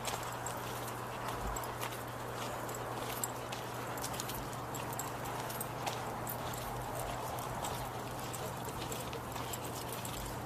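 Footsteps crunching on a gravel path, a steady scuffing with many small irregular clicks, over a steady low hum.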